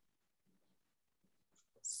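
Near silence: faint room tone through a video-call connection, with a few small, faint low sounds, ending in the hiss of the spoken word "six".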